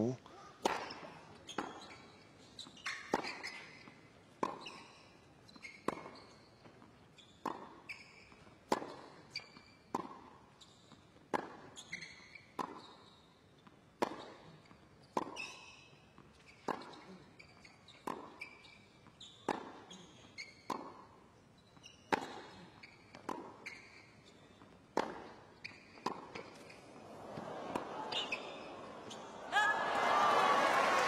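A tennis rally on a hard court. Crisp racket hits on the ball alternate with softer ball bounces, about one hit every second and a half, each with a short echo in the stadium. Near the end crowd noise swells as the point finishes.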